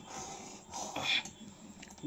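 Thick tamarind chutney bubbling at the boil in a metal wok, with a few soft irregular plops and a ladle stirring through it.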